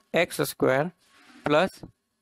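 Speech: a lecturer's voice in two short phrases, with a faint short hiss between them.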